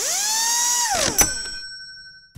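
Sound effect of an electric drill spinning up, running for about a second and winding down, followed by a sharp click and a ringing ding that fades away.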